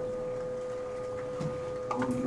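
Room noise of a meeting hall during a pause in talk, with a steady high-pitched electrical hum and a small knock near the end.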